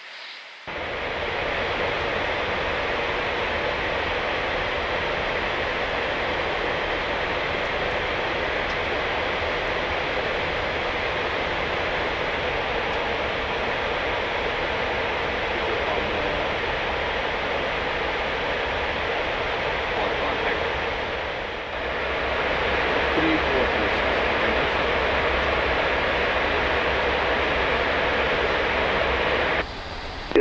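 Steady rushing noise of airflow and air conditioning on an Airbus A340-300 flight deck in flight. It dips briefly about two-thirds of the way through, then carries on slightly louder.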